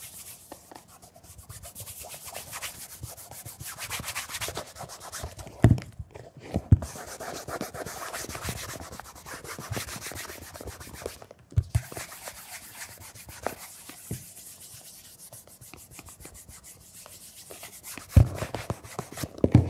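Cloth wrapped around fingers rubbing the leather upper of a Berluti shoe with cleaner, scrubbing off old cream and wax in quick back-and-forth strokes. The rubbing pauses briefly about six and eleven and a half seconds in, and a few short knocks stand out, the loudest two just before and after the first pause.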